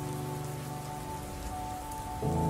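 Steady heavy rain, a downpour, over a few sustained low tones of background music.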